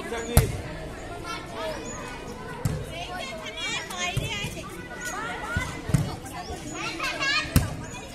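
Volleyball being struck during a rally: about six sharp slaps of hands and forearms on the ball, one to two seconds apart, the loudest just after the start and near the end. Girls' voices chatter and shout between the hits.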